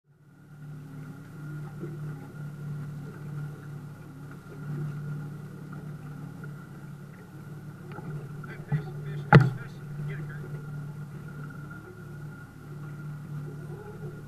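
A boat's outboard motor running steadily at low speed as a low, even hum, with a sharp knock about nine seconds in.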